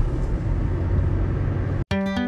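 Steady low rumble of road and engine noise from a moving car, heard from inside the cabin. It cuts off abruptly near the end as acoustic guitar music begins.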